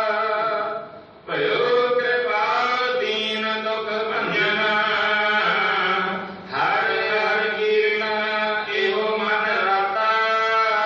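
Sikh devotional chanting (simran): long, held sung lines over a steady low tone, with brief breaks about a second in and just after six seconds.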